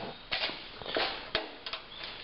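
Soft shuffling and handling noises with a few light clicks; the engine is not running.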